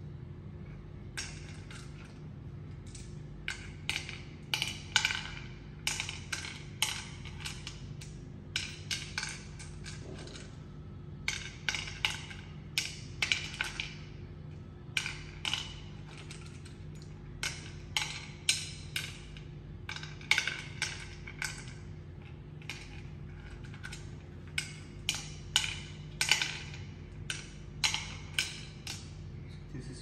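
Hard Ayo seeds dropped one at a time into the pits of a wooden Ayo (mancala) board, clicking in quick runs of about three or four a second with short pauses between runs, over a steady low hum.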